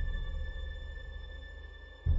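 Intro-sting sound design under a logo animation: a deep bass boom dies away while a thin, steady high tone holds above it. A fresh low hit lands right at the end.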